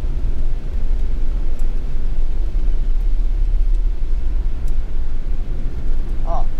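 Steady low cabin rumble of a camper van driving on a wet road, engine and tyre noise heard from inside the vehicle.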